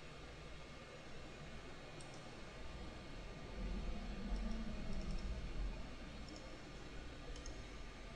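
Faint computer mouse clicks over quiet room noise, with a low rumble for a couple of seconds midway.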